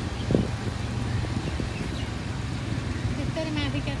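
Motor scooter engine running steadily with road and wind noise, as heard while riding along at low speed, with a brief knock about a third of a second in. A voice starts near the end.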